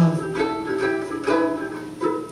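A 90-year-old banjo ukulele strummed in a short instrumental break. A held sung note dies away just after the start, then a few chords are strummed.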